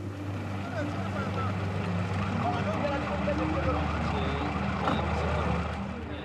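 Steady low drone of a boat engine running, with a faint babble of several overlapping voices in the background.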